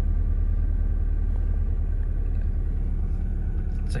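Mazda Miata NB four-cylinder engine idling steadily on a MegaSquirt standalone ECU, a low even rumble heard from inside the cabin.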